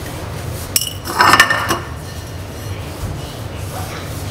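Grilled egg's shell knocked against a ceramic bowl and breaking: a sharp click a little under a second in, then a brief, louder crackle of cracking shell.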